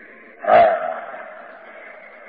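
A man's single drawn-out exclamation, 'hā', about half a second in, followed by a pause with a steady faint hiss.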